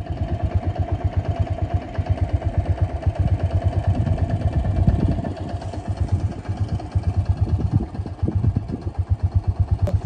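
Yamaha XT500's single-cylinder four-stroke engine idling: an even, rapid thumping that swells a little about halfway through.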